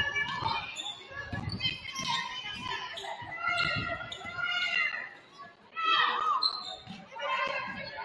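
Young women's voices calling out on the court in a large, echoing gym, with a basketball being dribbled on the hardwood in short thuds.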